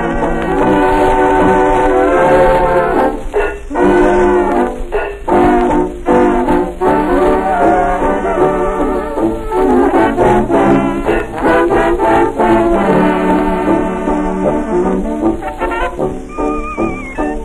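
A 1920s jazz dance orchestra playing a blues from a 1925 Okeh 78 rpm record, with brass instruments such as trombone and trumpet out front. The sound is dull, with no top end and a faint hiss above it, as on an old shellac disc.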